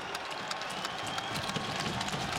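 Hockey arena crowd noise with many irregular clacks of players banging their sticks on the ice and boards, the customary salute to two fighters at the end of a fight.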